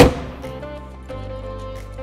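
A car hood, on a 2017 Jeep Grand Cherokee, is shut with one sharp thump right at the start, its ring dying away within about half a second. Steady background music plays underneath.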